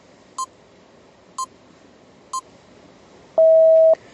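Quiz countdown timer sound effect: three short high beeps about a second apart, then one longer, lower and louder tone lasting about half a second as the time runs out.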